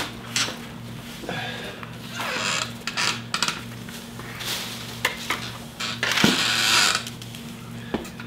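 Leafy pomegranate branch rustling and the aluminium-foil wrap of its air layer crinkling as it is handled, in a series of short bursts, over a low steady hum.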